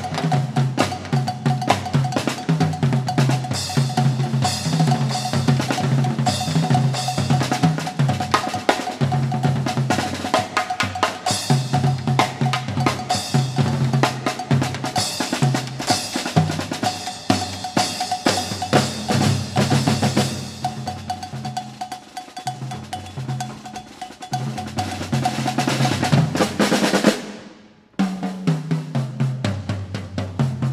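Percussion ensemble of three drummers on several drum kits playing fast interlocking tom and snare strokes with cymbal crashes. The playing drops quieter about two-thirds of the way through, then builds to a loud peak that cuts off suddenly near the end; after a short gap the drumming starts again.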